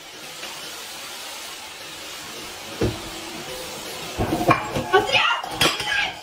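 A vacuum cleaner running with a steady hiss. There is a single knock about three seconds in, then clatter and excited voices over the last two seconds.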